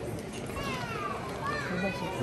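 Busy street crowd chatter with a young child's high voice calling out a couple of times from about half a second in, the pitch sliding down.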